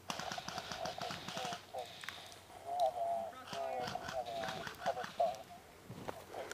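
Distant voices calling, too far off to make out, over a quick run of clicks and rustling that starts suddenly.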